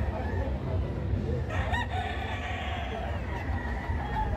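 A gamecock crows once, starting about a second and a half in and lasting under two seconds, over a steady low background rumble.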